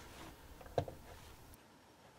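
Faint handling sounds: a soft tick, then a single light click a little under a second in as a small steel collet holder fitted with an end mill is set down on a wooden board. Low background hiss that drops away about one and a half seconds in.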